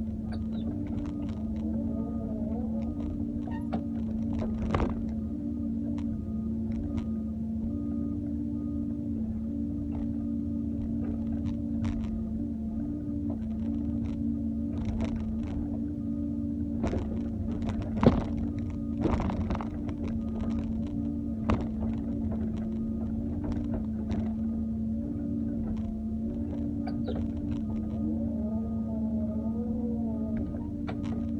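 Doosan wheeled excavator's diesel engine running steadily in the cab as the boom and bucket are worked. Scattered clanks and knocks come through, the loudest about 18 seconds in, with a few brief wavering whines near the start and the end.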